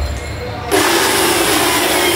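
A low thump, then about two-thirds of a second in a small electric cleaning machine with a hose nozzle switches on and runs with a steady, loud rushing hiss.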